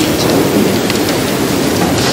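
Audience applauding: a steady, dense clapping.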